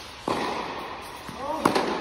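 Tennis rally on an indoor court: a tennis ball is struck sharply with a racket about a quarter of a second in and again about a second and a half in, each hit echoing in the large hall. Just before the second hit, tennis shoes squeak briefly on the court surface.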